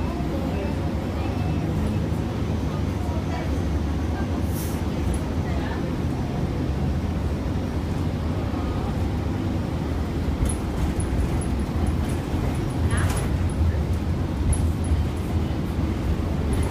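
Inside a moving city bus: steady low engine and road rumble, with a couple of short rattles or knocks from the bus body about four seconds in and again near the end.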